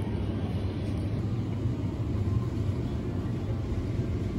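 Steady low rumble of supermarket background noise, even throughout.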